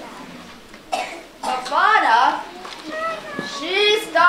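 Children's voices talking, not clearly worded, with a short cough about a second in.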